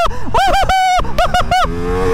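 A rider shouting and whooping in several short, high-pitched bursts while accelerating hard on a Ducati Multistrada V4 S. Near the end the shouting stops and the bike's V4 engine comes through, its note rising as the speed climbs.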